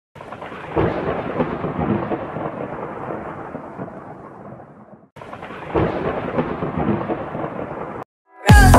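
Rolling thunder with rain: a rumble that swells early and slowly fades over about five seconds, then cuts off and starts over the same way.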